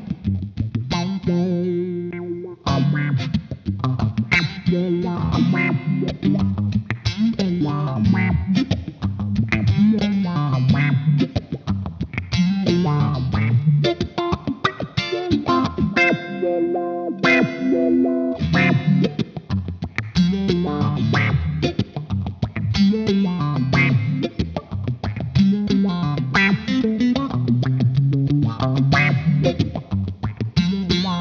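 Electric guitar played through a GFI System Rossie envelope filter pedal: choppy, rhythmic funk chords and notes whose tone sweeps up and down with the filter. A longer held chord rings about halfway through.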